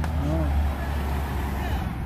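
Low, steady engine rumble of an SUV driving slowly past close by, fading out near the end.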